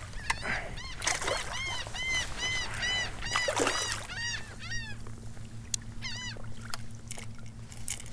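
A bird calling in a rapid run of short, arched notes, about two or three a second, stopping about five seconds in and coming back briefly near the end. A hooked redfish splashes at the surface beside the boat.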